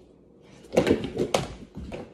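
Silicone oven mitts swung and slapped, making a few loud sharp slaps and thuds starting just under a second in.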